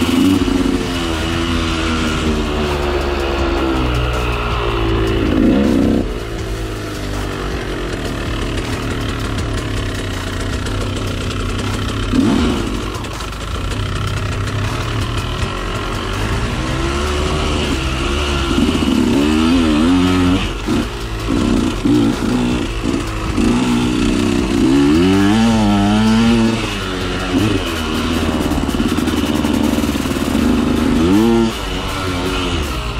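2013 KTM 125 SX two-stroke dirt bike engine being ridden hard, its pitch sweeping up and down over and over with bursts of throttle and gear changes.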